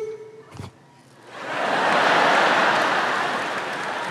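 Studio audience applauding in reaction to a joke. It swells up about a second and a half in and slowly fades.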